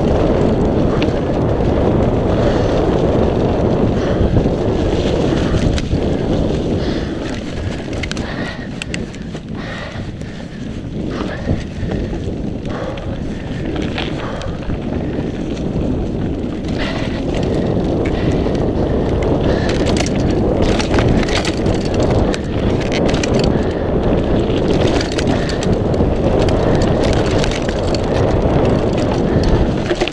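Mountain bike riding fast down a dirt trail covered in dry leaves: steady rush of tyres on dirt and leaves mixed with wind on the microphone, with rattling clicks and knocks from the bike over bumps, thicker past the middle.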